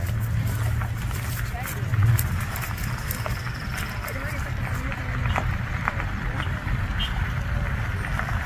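Low, steady rumble of pickup trucks running slowly in a line, with the voices of people around them.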